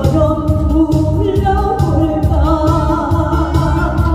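A woman singing a trot song into a microphone, amplified through a PA, over backing music with a steady beat about twice a second; her held notes waver with vibrato.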